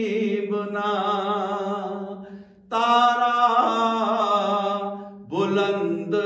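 A man's solo voice singing a Gujarati manqabat, a devotional poem, into a microphone. He holds long wavering notes and breaks off briefly twice.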